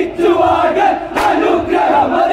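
Group of men chanting a Malayalam folk song together in loud unison, with a sharp hand clap about a second in.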